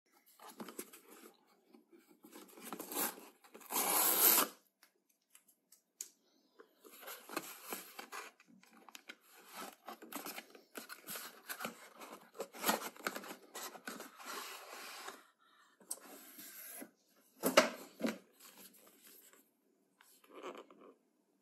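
Brown cardboard shipping carton being torn open by hand and its flaps pulled apart, with irregular tearing, scraping and rustling of cardboard. The longest, loudest tear comes a few seconds in, and a sharp scrape comes near the end.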